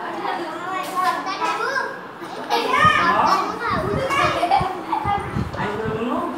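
A group of children's voices chattering and calling out over one another, with some low bumps in the second half.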